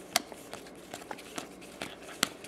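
Baseball trading cards flicked one by one off a stack, each card giving a light papery snap, about six in two seconds.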